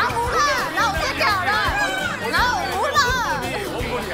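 Young women's high-pitched squealing, baby-talk cooing, the kind of gushing used on a puppy, in quick swooping pitches, over background music.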